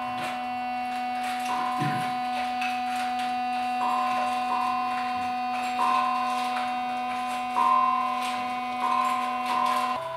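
Concertina holding a steady low two-note chord while a higher reed note is sounded again and again in short, even notes, often in pairs, every second or two, with faint soft clicks between them.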